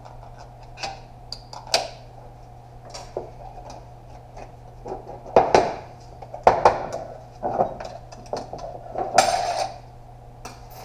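A steel snap ring being pried out of its groove on an automatic-transmission clutch drum with a screwdriver: scattered metal clicks and scrapes, with two loud clanks about halfway through and a longer scraping rattle near the end. A low steady hum runs underneath.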